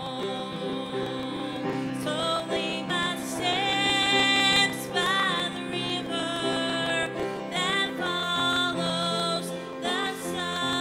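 A woman singing a solo song and accompanying herself on a grand piano, holding notes with vibrato over sustained piano chords.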